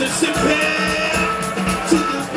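Live sixties-style garage and rhythm & blues band playing: electric guitars, bass and drums with a steady beat.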